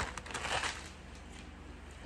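Clear plastic bag crinkling briefly as a pair of sunglasses is pulled out of it, dying away within the first second into a faint steady low hum.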